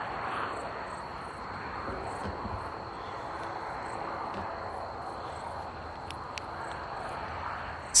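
Crickets trilling at night: a steady high note over an even background hiss.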